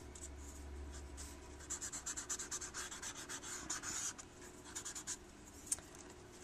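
Paper blending stump rubbing graphite into sketchbook paper, a run of quick, short, scratchy strokes through the middle.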